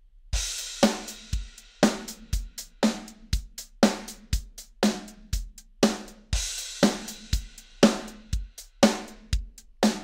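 MT-PowerDrumKit sampled drum kit playing a programmed MIDI beat: kick and snare hits about twice a second over hi-hat, with a cymbal crash at the start and again about six seconds in. The hit velocities are being randomized around a baseline of 99 by a MIDI velocity humanizer, so the hits vary in loudness.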